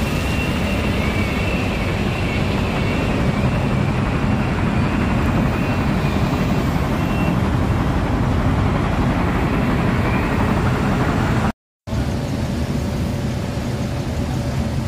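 Steady, loud rumble of heavy machinery at an iron ore grizzly feeder, with a faint wavering whine in the first half. The sound drops out for a moment near the end.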